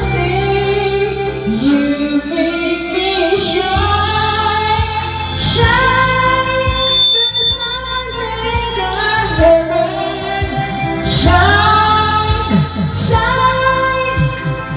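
A woman singing a song over instrumental accompaniment with a low bass line and percussion.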